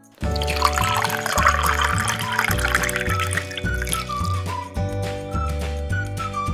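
Milk pouring from a plastic measuring jug into a blender jar of banana slices, a trickling pour over the first few seconds. Background music with a bass line and a whistle-like melody plays throughout.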